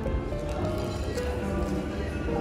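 Background music: a slow, gentle melody of held notes that step from one pitch to the next about every half second.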